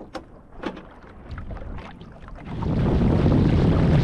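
Water lapping and slapping against a small sailboat's hull in short, irregular splashes. About two and a half seconds in, loud, low wind rumble on the microphone takes over.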